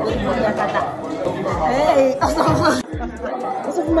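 Voices talking and chattering close by over background music with a deep, recurring bass beat.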